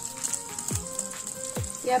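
Vegetable oil sizzling around spoonfuls of fritter batter frying in a pan, with background music.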